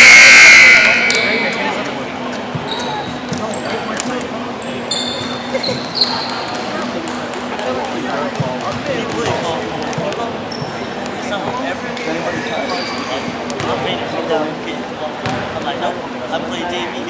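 A loud, shrill blast about a second long right at the start, then basketball sounds on a gym floor: a ball bouncing, short sneaker squeaks and background voices echoing in a large hall.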